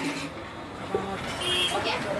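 Busy street ambience: steady traffic noise with scattered voices, a sharp click a little under a second in and a brief high-pitched tone about one and a half seconds in.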